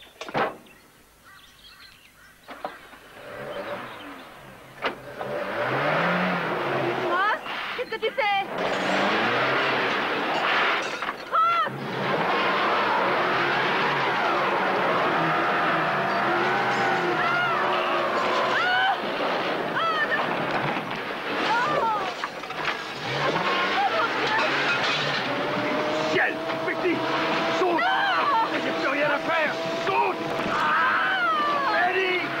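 Camper truck's engine running while its tyres slide and crunch on gravel, the vehicle slipping over a drop, with voices crying out over it. It starts quietly with a few knocks and becomes loud and continuous about five seconds in.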